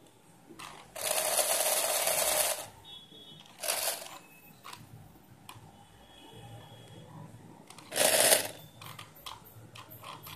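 Small brushed DC motor of a homemade RC car, geared to the axle, whirring in short bursts as it starts and stops. The longest burst is about a second and a half, starting about a second in, with shorter ones near four and eight seconds.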